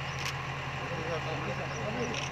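An engine idling with a steady low hum, under faint talk from a crowd of people. There is a single click about a quarter second in.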